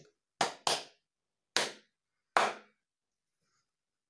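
Four hand claps beating out a set rhythm: two quick claps close together, then two single claps spaced just under a second apart.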